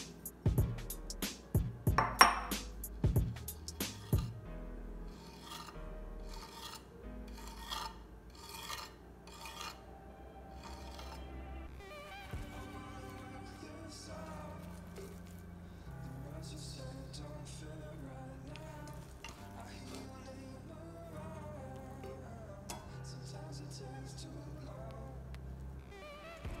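A metal spoon clicking and scraping on a slate serving board as a thick sauce is dolloped and spread, in a run of sharp clicks followed by repeated scraping strokes. The scraping stops about halfway through, leaving only faint handling.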